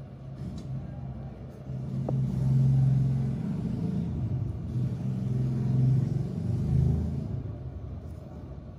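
A motor running with a low steady hum and rumble, swelling about two seconds in and dying away near the end.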